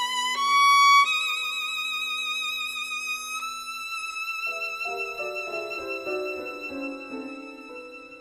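Violin and piano duo: the violin holds long high notes with vibrato, stepping up once about a second in and then slowly fading, while the piano comes in with soft low chords about halfway through, near the close of the piece.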